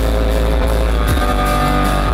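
Live worship-rock band playing an instrumental passage with no vocals: electric guitar over bass, keyboard and drums, loud and full.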